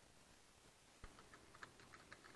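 Near silence, then faint typing on a computer keyboard starting about a second in, a scatter of separate key clicks.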